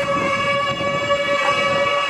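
Gagaku music accompanying a bugaku dance: one long held reedy wind note at a steady pitch, with slight bends in pitch.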